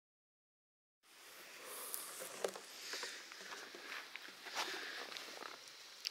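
Dead silence for about a second, then quiet outdoor ambience with scattered rustles and sharp clicks, typical of footsteps and movement in forest leaf litter, and a brief high arching chirp near the middle.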